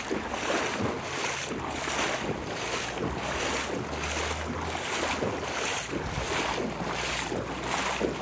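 Feet wading through shallow floodwater, splashing and swishing in a steady rhythm of about two steps a second.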